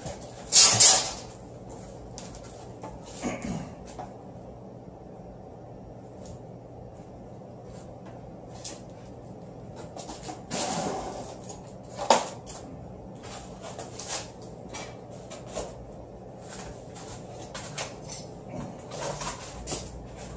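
Handling noise from assembling PVC pipe and foam float tubes: scattered knocks, rubs and clatter as foam is slid onto the pipe and the frame is moved, with a few louder knocks about a second in and around the middle. A low steady hum runs beneath.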